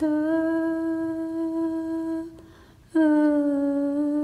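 A woman humming a slow lullaby in long held notes: one steady note for about two seconds, a brief pause, then a second note near the end.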